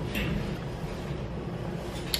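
A person chewing frozen blueberries: a low, steady, muffled rumble.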